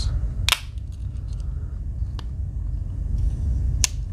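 Swiss Army knife tools snapping against their backsprings as they are folded and opened: two sharp clicks, about half a second in and near the end, with a fainter click in between, over a low steady rumble.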